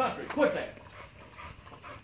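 An American bully dog panting faintly, with a brief soft vocal sound about half a second in.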